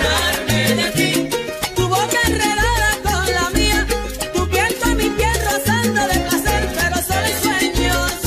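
Salsa music playing: a bass line under dense, even percussion, with a wavering melody line in the middle.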